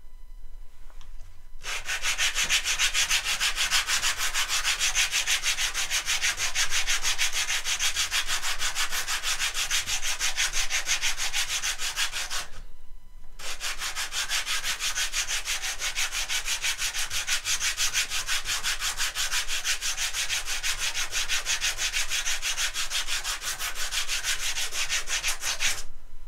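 A small wooden block rubbed back and forth by hand on a flat sandpaper board, hand-sanding in rapid, even strokes. It runs in two long bouts with a short pause near the middle.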